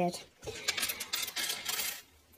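Small letter tiles clattering and rattling as they are tipped out of a cloth drawstring pouch onto a tabletop. The rattle starts about half a second in: a quick jumble of many small clicks.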